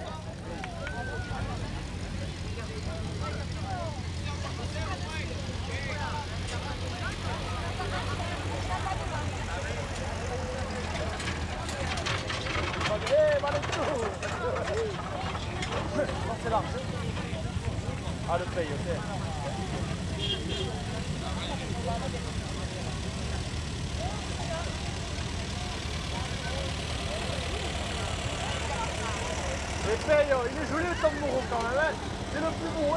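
Small vintage farm tractor engines running slowly as they pass, a steady low drone, with people chattering over it.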